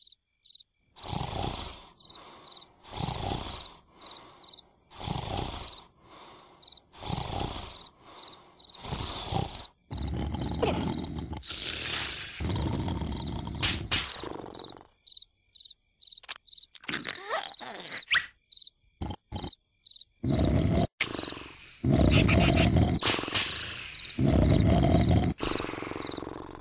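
Cartoon larva characters' exaggerated vocal sound effects in rhythmic loud bursts about once a second, alternating stronger and weaker, over a faint steady high cricket chirping. In the second half come longer, louder stretches of noise.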